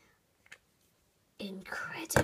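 Near silence with one faint click about half a second in, then a child's wordless vocal sound starting about a second and a half in.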